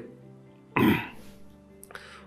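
A man clearing his throat once, briefly, about three-quarters of a second in, over a quiet steady background music bed.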